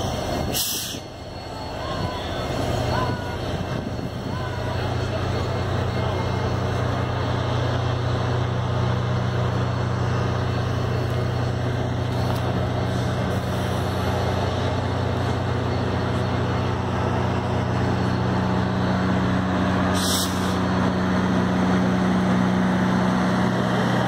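Union Pacific passenger cars rolling slowly past on the rails, with a steady low engine hum that grows louder through the pass and a couple of brief sharp clicks, one about a second in and one near the end.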